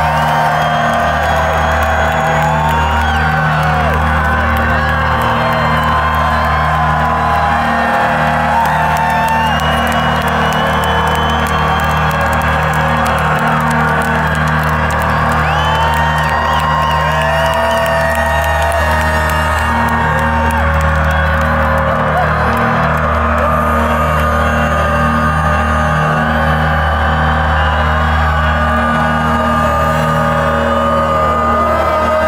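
Rock band playing live through a large concert sound system, low notes held steadily underneath, with a crowd whooping and cheering over the music.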